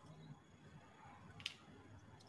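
Near silence, with one faint click about one and a half seconds in as wooden kit pieces are handled and pressed together.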